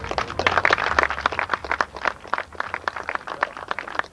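Small crowd applauding: many separate hand claps that start together, are thickest in the first second or two and thin out toward the end.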